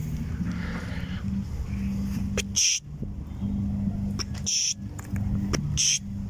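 A phone camera's shutter sound going off three times, short sharp clicks about two seconds apart, over a steady low hum.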